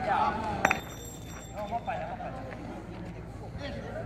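A thrown metal playing piece lands with one sharp clink that rings on briefly, with men's voices around it.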